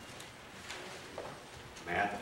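Quiet room tone in a church sanctuary with faint rustles and small clicks, and a person's voice starting near the end.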